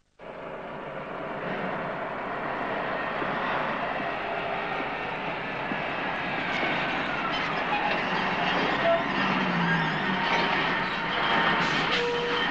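A heavy vehicle running with a steady, even rumble and hiss, and a faint falling tone near the end.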